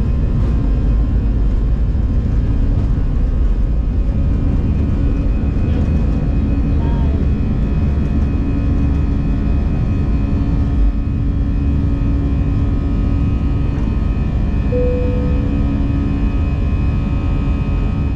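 Airliner engines at takeoff power, heard from inside the cabin as a loud, steady roar with a constant whine as the plane lifts off and climbs.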